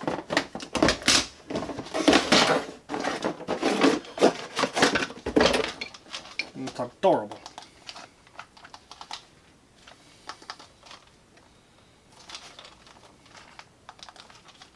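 Cardboard box and plastic packaging being torn open and rustled, a dense run of crackles and scrapes for about six seconds. Then sparse, quiet clicks as the plastic toy bubble minigun is handled.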